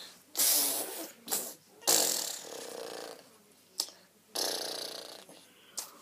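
A child making breathy, hissing vocal noises as an animal impression, here of a giraffe, in about four separate blows of different lengths.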